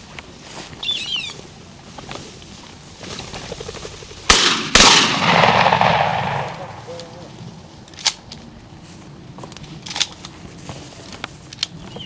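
Two shotgun shots about half a second apart, about four seconds in, each a sharp report, followed by a long rolling echo that fades over about two seconds.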